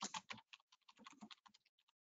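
Faint computer keyboard typing: a quick, irregular run of keystrokes.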